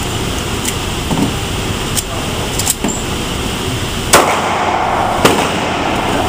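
Magazine change on a ParaOrdnance P-10 .45 pistol, with small clicks and clacks, then two sharp gunshots about a second apart in the second half, the first the loudest, over steady indoor-range noise.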